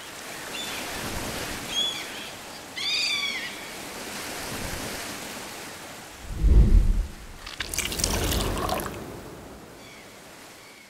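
Seaside sound-effect intro: a steady surf-like hiss with a couple of short gull-like cries early on, a deep thud about six and a half seconds in, then a splashing, pouring liquid sound that fades out.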